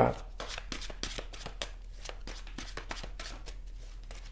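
Tarot cards being shuffled by hand: a quick, irregular run of light papery clicks, busiest in the first couple of seconds and then sparser.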